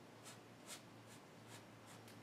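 A flat paintbrush stroking acrylic paint onto a stretched canvas: faint, short strokes, about two or three a second.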